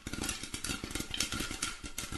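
Popcorn-popping sound effect: a dense, rapid crackle of many small pops that starts suddenly.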